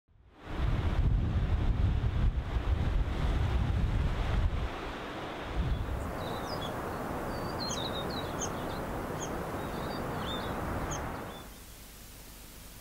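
Surf breaking on a rocky shore with wind buffeting the microphone, a loud rushing sound with deep rumble. About six seconds in it gives way to a softer steady rush with small birds chirping high and repeatedly, fading out near the end.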